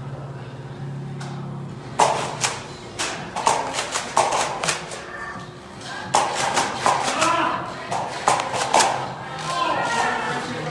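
Foam-dart blasters firing: a run of sharp, irregular pops starting about two seconds in.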